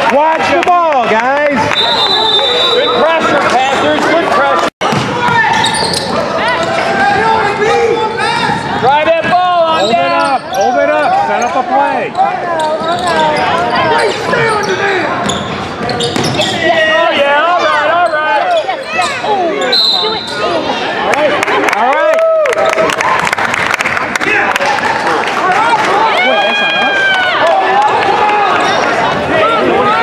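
Basketball game on a hardwood gym floor: sneakers squeaking, the ball bouncing and voices from players and spectators in an echoing hall. A short, high referee's whistle sounds about two seconds in and again around twenty seconds.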